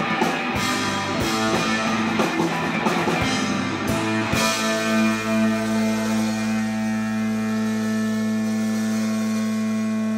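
Live rock band with electric guitars, bass guitar and drum kit playing loudly. About halfway through the drum hits stop and the band holds one sustained chord that rings on.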